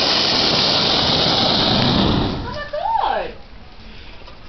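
A homemade sparkler bomb packed in a tennis ball going off: a loud, steady rush of burning noise for about two and a half seconds that then dies down, with a person calling out about three seconds in.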